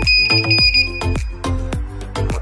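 Background music with a steady beat, over which a piezo buzzer on a Sherlotronics wireless receiver board holds one long, high beep while the receiver is in learn mode. The beep stops about two-thirds of the way through.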